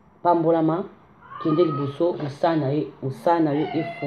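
A woman's voice in short, expressive phrases with a swooping, sing-song pitch, and a thin high sliding note about a second in.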